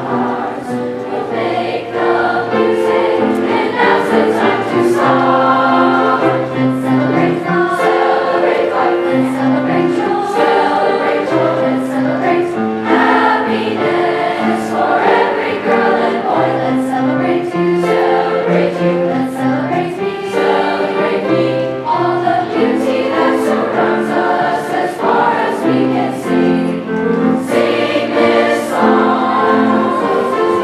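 Seventh-grade mixed choir singing with grand piano accompaniment, many young voices holding sustained notes together.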